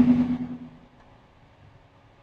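A man's voice through a microphone trails off at the end of a phrase in the first half-second. A pause follows with only faint, steady background hiss.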